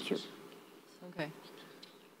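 A woman's voice ends with "you" of "thank you", then a pause of quiet hall room tone with one brief, faint voice about a second in.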